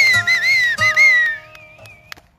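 A whistled melody with sliding, wavering notes over held accompaniment notes, the last note fading out about a second and a half in.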